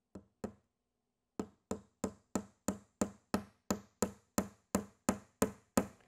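A hammer driving a 1¼-inch nail through the wooden top bar of a Langstroth beehive frame into the end bar. Two light starting taps, then a steady run of sharp strikes at about three a second.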